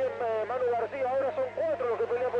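Speech only: a commentator talking without pause, in the manner of a radio race broadcast.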